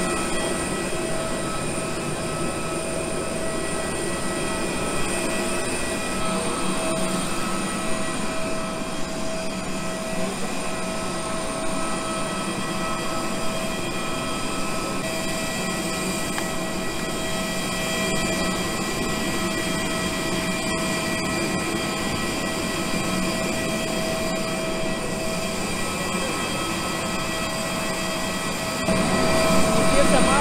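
Airliner turbine running on the apron: a steady high-pitched whine made of several fixed tones over a broad rushing hiss.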